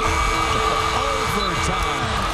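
Loud basketball-arena crowd noise with a steady held tone running under it.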